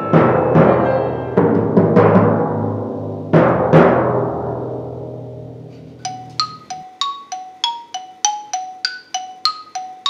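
Timpani struck several times, the low notes ringing and dying away over a few seconds. From about six seconds in, a marimba is played in a quick run of short single notes.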